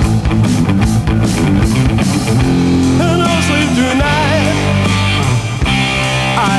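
Rock song with a full band of drums and guitar, during a gap between sung lines. A wavering melody line comes in about halfway through.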